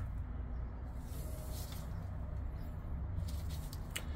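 Quiet handling noise: gloved hands turning a folding knife over, with faint soft rustling twice, once about a second in and again near the end, over a low steady hum.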